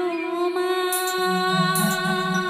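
Music with long held notes sounding steadily together. A deeper note comes in just over a second in.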